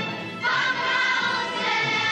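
Children's choir singing with instrumental accompaniment: a new sung phrase enters about half a second in after a brief dip.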